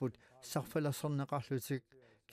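A man speaking in an interview; nothing but speech is heard.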